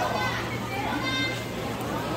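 Voices of people talking at a busy market food stall, including a child's high-pitched voice, over a steady low hum.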